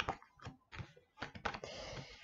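Oracle cards being handled on a table: a run of quick, irregular light clicks and taps as cards are picked up and laid down, with a short rustle near the end.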